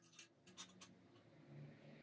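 Faint handling of small steel pieces: a few light clicks as a steel square is set against an old file, then a soft scratch of a felt-tip marker drawing a line near the end.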